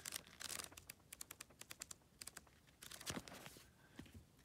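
Faint riffling of an old paperback's pages under a thumb: a quick run of soft paper ticks, then a louder rustle about three seconds in as the book is handled.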